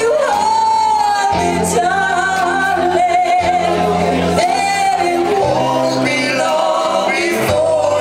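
Live band music: a woman singing lead in long held, wavering notes over electric guitar, electric bass and drums.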